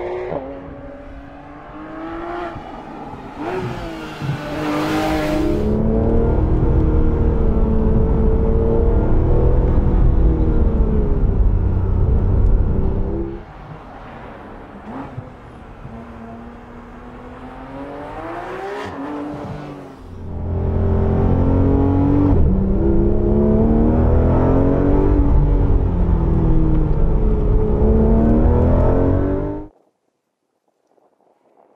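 Porsche 911 GT3 RS naturally aspirated flat-six engine revving hard, its pitch climbing and dropping again and again through the gears. It is loud for two long stretches, fades in the middle, and cuts off just before the end.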